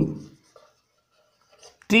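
Marker pen writing on a whiteboard: a few faint, short scratches.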